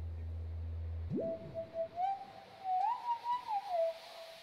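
Electronic sound-design tone from the documentary's soundtrack: a low steady hum that, about a second in, sweeps sharply up into a high held tone, which then slides up and down between a few pitches like a theremin.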